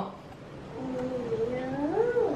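A toddler's long wordless vocal sound: a wavering hum that starts about a second in and rises in pitch near the end.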